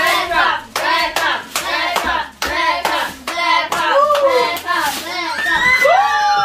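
Repeated hand claps, about two or three a second, with voices rising and falling over them in short repeated calls.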